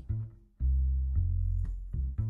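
Double bass and electric guitar starting a song with plucked low notes: a short note, a brief break, then a long held note.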